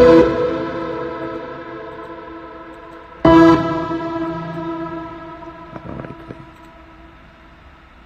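Keyboard chords from a beat in progress, with echo: one rings out and fades, and a second chord is struck about three seconds in and dies away slowly. A few faint clicks come about six seconds in.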